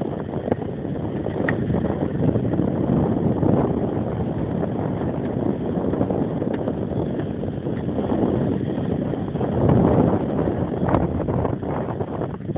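Wind buffeting the camera microphone: a steady low rumble that swells about ten seconds in, with a few faint clicks.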